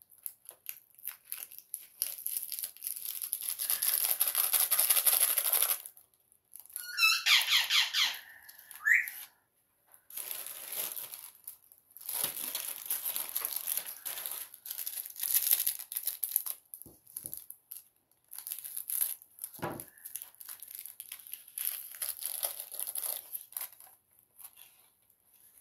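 Small plastic sachets of diamond-painting drills crinkling and rustling as they are handled and opened, in several bursts with short pauses between them, with a few squeaks from the plastic.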